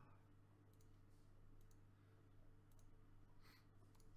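A few faint computer-mouse clicks, one for each Go stone placed on the online board, over a steady low electrical hum.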